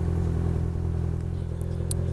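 Kawasaki Ninja 1000SX motorcycle's inline-four engine running steadily at low speed, with one short click near the end.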